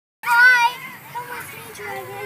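A child's high-pitched, wavering squeal starting abruptly a moment in and lasting about half a second, followed by quieter children's voices at play.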